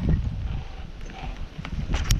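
Mountain bike rolling over rough, bumpy grass, with irregular knocks and rattles from the bike over a low rumble of wind and movement on the bike-mounted camera.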